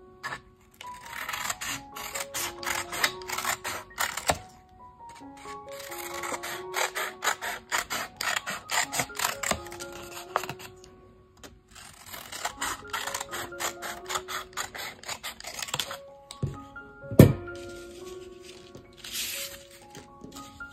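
Scissors snipping through a paper plate in three runs of quick, rapid cuts, over light background music. One sharp knock comes a few seconds before the end.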